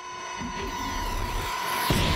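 Film sound effect of a flying bladed silver sphere: a steady high whine that grows louder as it flies in. A sudden hit comes near the end.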